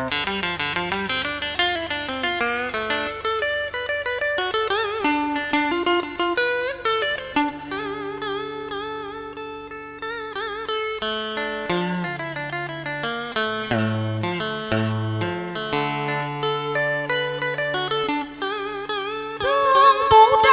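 Electric guitar playing an instrumental interlude of Vietnamese tân cổ (vọng cổ) music, with bending, wavering melody notes over sustained low bass notes. A woman's singing voice comes in, louder, near the end.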